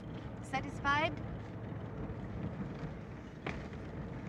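Steady engine and road noise of a convertible car driving along, open to the air. About a second in, a short falling vocal sound from one of the occupants.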